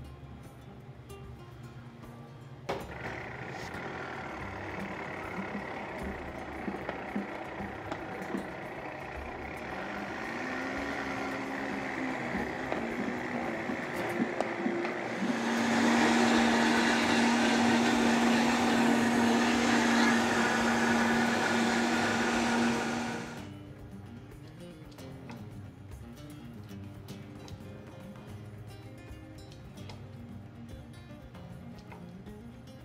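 Countertop blender puréeing tomatoes and raw vegetables: it starts suddenly a few seconds in at a lower speed, climbs, then jumps to a louder high speed with a steady hum about halfway through, and cuts off suddenly about two-thirds of the way in.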